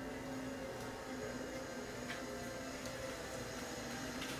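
Low steady hum of room noise, with a couple of faint ticks about two and three seconds in.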